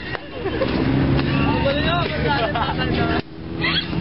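Several young people talking and laughing over one another, with a steady low hum of road traffic behind. The sound drops out briefly about three seconds in.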